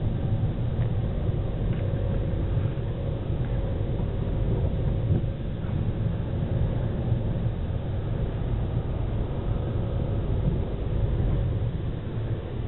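Car engine and road noise heard from inside the cabin while driving slowly: a steady low rumble with a faint, even hum above it.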